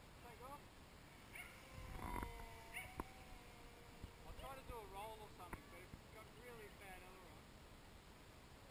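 Faint, steady whine of a small electric RC model plane's motor as it flies overhead, its pitch sagging slowly over several seconds. Short wavering calls and a few faint clicks sound over it.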